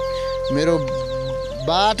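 A hen clucking, with short pitched calls about half a second in and again near the end, over background music with a steady held tone.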